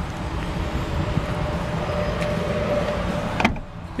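Steady low rumble of the truck's Vortec 5.3-litre V8 idling, heard in the crew cab, with one sharp thump about three and a half seconds in as the folded-up rear seat cushion is dropped back down.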